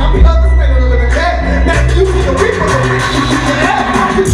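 Hip hop beat with heavy bass playing loud over a club PA, with a rapper's voice on the microphone over it.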